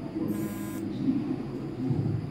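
A short electronic buzz, about half a second long, a third of a second in, over a steady low background rumble.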